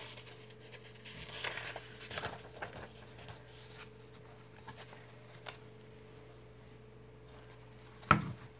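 Thin paper pages of a coloring book rustling and being flipped by hand, with a few small taps and one sharper tick a little over two seconds in. After about four seconds only a faint steady hum remains.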